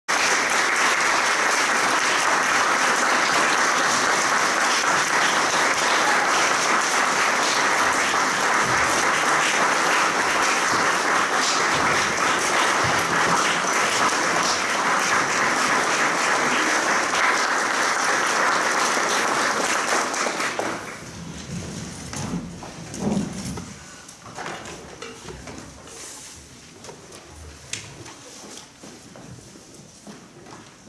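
Audience applauding steadily for about twenty seconds, then dying away. After that come quieter scattered knocks and shuffles as the performers take their seats.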